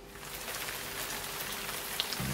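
Steady rain falling, fading in from silence over the first half second.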